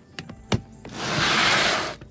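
A few sharp knocks, the sharpest about half a second in, then about a second of loud scraping noise: a plastic storage tote is shut and pushed back under the bed.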